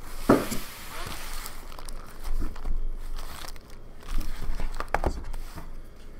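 Foil wrappers of Upper Deck hockey card packs crinkling and tearing as packs are ripped open, mostly in the first second or so, followed by scattered light knocks of packs and boxes handled on a table.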